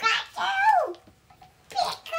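A young child's high-pitched wordless vocal sound, rising and then falling in pitch over about a second, followed by a shorter one near the end.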